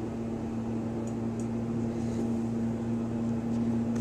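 ThyssenKrupp hydraulic elevator running during a ride, a steady low hum with two steady tones; the higher tone cuts off near the end.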